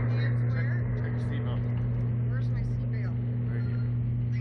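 A steady, loud low hum with a second tone an octave above it, from machinery, under a few brief, indistinct murmurs of talk.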